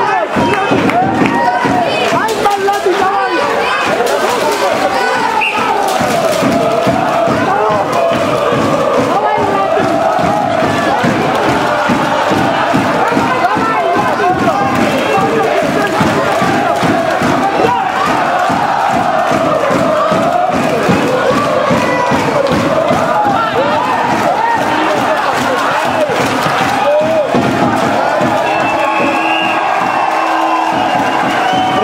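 Large crowd of wrestling spectators in a sports hall shouting and cheering loudly and without a break, many voices at once.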